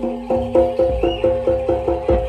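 Live Javanese gamelan-style music for a jaranan dance: metal percussion struck in a quick, steady repeating pattern of about four to five notes a second, with a deep drum beat near the start.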